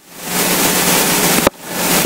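A loud rush of breath on a close microphone, swelling over the first half-second and breaking off sharply about one and a half seconds in before a shorter second breath.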